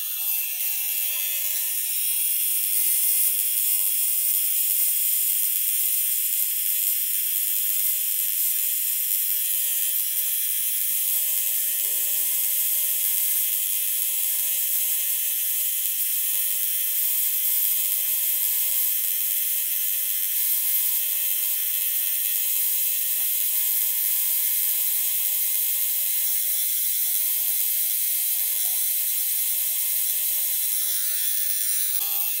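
Tattoo machine running steadily with an even, high-pitched buzz as its needle packs black ink into skin.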